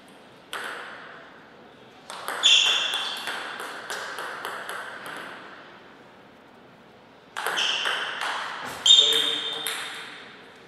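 Table tennis ball clicking back and forth between bats and table in two quick rallies, each with a loud hit that rings with a high ping. A single bounce comes about half a second in.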